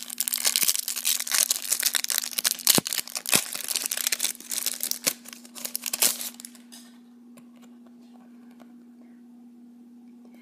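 Crinkly plastic wrapper of a Yu-Gi-Oh! promo card pack torn open and crumpled by hand, a dense crackling that dies away after about six and a half seconds.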